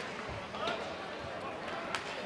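Ice hockey rink sound during live play: a steady hiss of skates and crowd murmur with a few sharp clacks of sticks and puck.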